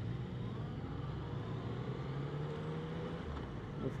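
Yamaha FZ-09's inline three-cylinder engine running at low road speed in traffic, its revs rising gently and easing off about three seconds in, with wind and road noise.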